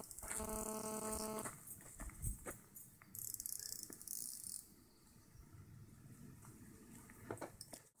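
Quiet outdoor ambience: a faint steady buzzing tone lasting about a second near the start, then a thin high hiss for about a second and a half, with a few light clicks scattered through.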